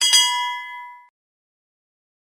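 Notification-bell 'ding' sound effect of a subscribe-button animation, as the bell icon is clicked: a single bright bell strike with several clear tones that ring and fade out within about a second.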